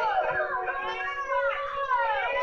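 Film soundtrack played from a TV: music with a held note, and over it a high voice wailing in several downward slides.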